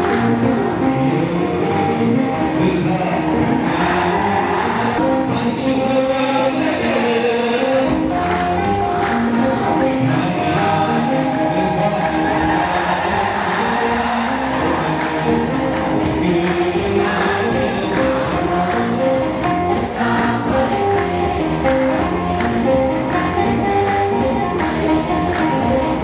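Ethiopian Orthodox religious song: a male singer on a microphone with a large crowd singing along as a choir, accompanied by rhythmic hand-clapping.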